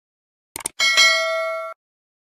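Notification-bell sound effect: two quick clicks, then a bright bell ding that rings for about a second and cuts off suddenly.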